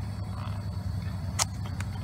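Steady low background hum, with one sharp tap about one and a half seconds in and a few faint ticks near the end as a small cardboard knife box is turned over in the hands.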